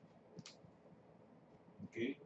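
A single sharp click at a computer, as the typed web search is submitted, about half a second in; otherwise near silence with faint room tone.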